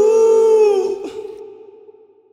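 Isolated male vocal track: a sung note held for about a second at the end of a line, then cut off and trailing away in reverb.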